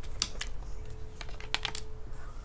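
Tarot cards being handled and laid down on a hard tabletop, with long fingernails: a handful of light, irregular clicks and taps.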